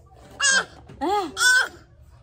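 A toddler's high-pitched wordless vocalising: three short squeals, each rising and falling in pitch, the last two close together.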